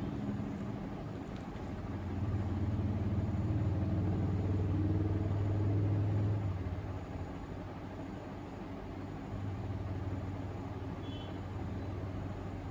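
Low rumble of a passing road vehicle that swells for a few seconds and fades, then rises again more faintly near the end.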